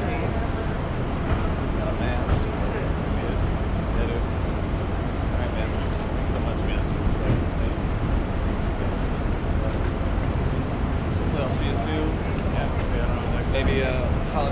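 Steady low rumble of traffic and idling vehicles along a busy airport departures curb, with indistinct voices mixed in.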